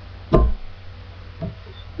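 A short knock of hands on a wooden tabletop about a third of a second in, then a lighter knock about a second later, over a steady low hum.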